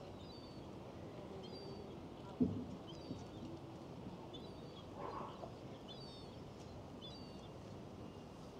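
Hushed open-air ambience of a large, still crowd, with a small bird chirping repeatedly, short high calls about once a second. A single sharp thump about two and a half seconds in is the loudest sound.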